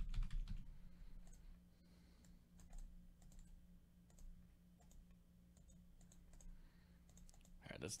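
Faint, scattered computer mouse clicks and keyboard keystrokes at irregular intervals.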